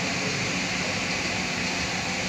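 Steady background room noise, an even hiss with no distinct events, in a pause between phrases of a man's speech.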